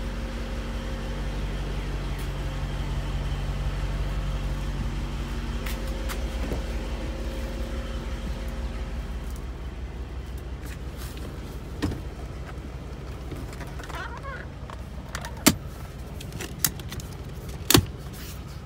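A car idling with a steady low hum, which fades about halfway through. Several sharp clicks and knocks follow in the last few seconds.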